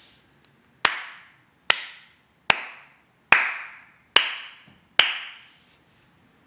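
A slow clap: six single hand claps, evenly spaced a little under a second apart, each followed by a ringing echo that dies away.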